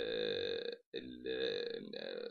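A man's voice holding two long, level-pitched hesitation sounds, like a drawn-out 'eeeh', with a short break about a second in.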